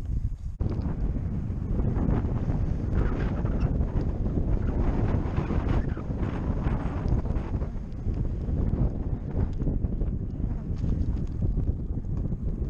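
Wind rushing and buffeting over the microphone of a camera on a bicycle moving at speed on a paved road. It cuts out briefly about half a second in, then runs on steadily.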